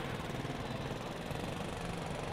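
Steady outdoor street noise with the low, even hum of an engine running.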